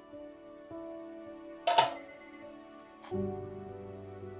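Soft background music with held tones, broken about two seconds in by a sharp metallic clank from the stainless steel pot lid being lifted off or set down.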